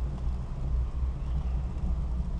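Low, unsteady rumble heard from a chairlift seat under its closed bubble canopy: wind buffeting the microphone over the hum of the chair travelling along its haul rope.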